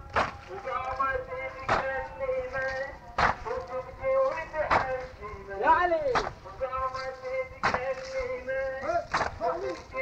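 A male voice chanting a Shia mourning lament (latmiya), with mourners beating their chests (latam) in unison, one sharp strike about every second and a half.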